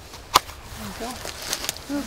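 A single sharp crack about a third of a second in, from red cedar bark being worked loose at the base of the trunk with a hand tool, followed by a few lighter clicks near the end. Quiet voices in the background.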